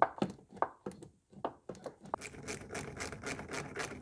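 Plastic intake manifold of a Mini Cooper S knocking and scraping against the engine as it is worked into place by hand: a few sharp knocks in the first second, then a run of quick clicks and rubbing in the second half.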